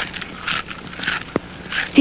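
Cartoon eating sound effects: a run of short, quick chomping and crunching noises as a boy gobbles his food, with one sharp click partway through.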